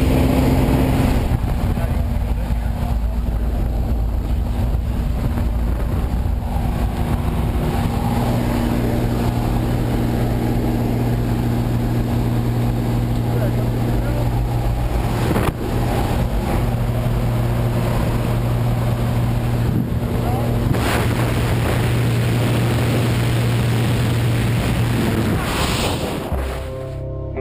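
Steady drone of a small jump plane's engine heard inside the cabin, with wind noise on the microphone.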